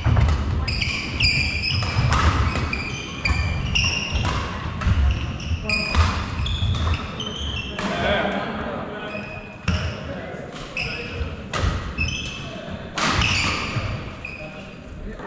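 Badminton doubles rally in a sports hall: sharp racket strikes on the shuttlecock, a fraction of a second to a second apart, with players' footsteps thudding on the wooden court floor and echoing around the hall.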